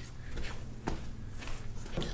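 Faint footsteps and shuffling on a concrete floor, with a few soft knocks.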